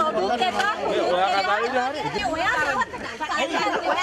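Overlapping speech: several people talking at once in a heated exchange.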